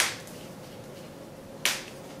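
Vent brush swept quickly through short hair: two brief swishes, one at the start and another about a second and a half later.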